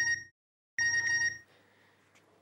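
Mobile phone text-message alert: a beeping electronic tone that cuts off just after the start, then sounds again for about half a second, signalling an incoming SMS.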